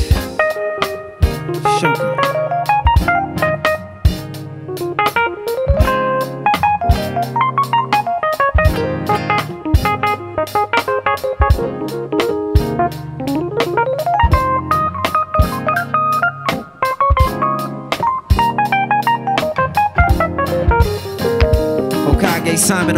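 Live band playing with a soprano saxophone solo of fast rising and falling runs, over a steady drum beat and a bass line.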